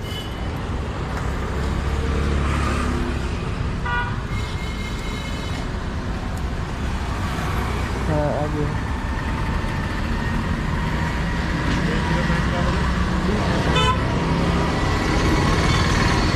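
Steady street traffic noise, with a short vehicle horn toot about four seconds in and another near the end.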